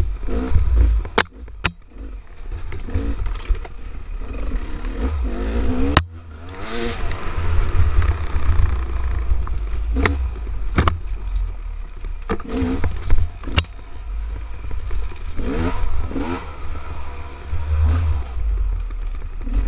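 Dirt bike engine revving up and down again and again as the bike is ridden along a twisting trail, with sharp clacks and knocks scattered through it and a heavy low rumble of wind on the helmet camera.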